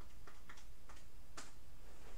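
Plastic keys of a handheld calculator clicking as a number is typed in: about six separate presses, the loudest about 1.4 s in.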